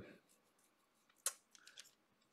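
Hard plastic parts of an action figure clicking as they are handled and pressed together: one sharp click a little past halfway, then a few faint ticks.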